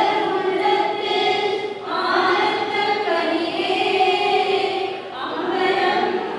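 A group of children and women singing a devotional song together in unison, in phrases, with a new phrase starting about two seconds in and again near the end.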